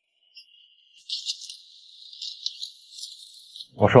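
High, thin jingling shimmer of small bells, a music sound effect with no low notes beneath it, coming in about a second in with a few brighter accents and fading near the end.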